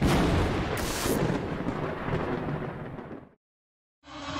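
Logo sound effect for a TV channel ident: a sudden boom-like hit whose noise fades away over about three seconds. A brief hiss sounds about a second in, and the sound cuts off just over three seconds in.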